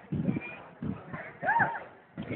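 Indistinct voices of onlookers talking, and about one and a half seconds in a single rising-and-falling meow from a cat.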